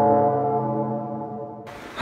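A single long horn-like tone, an edited-in start signal following the countdown hits. It fades steadily and cuts off suddenly shortly before the end.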